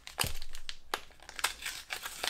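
Foil wrapper of a Pokémon Unified Minds booster pack crinkling as it is torn open by hand: a quick run of sharp crackles near the start, then a few scattered crackles.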